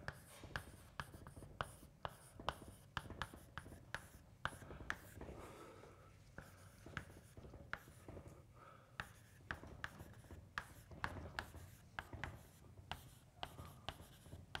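Chalk writing on a blackboard: a quick, irregular run of faint taps and short scratches as each stroke of an equation is made.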